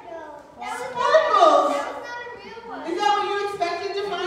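Several children's voices exclaiming and chattering over one another, high-pitched, rising to a peak about a second in and again near the end.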